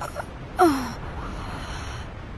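A voice-actor's breathy gasp: a short intake at the start, then a louder gasp sliding down in pitch about half a second in.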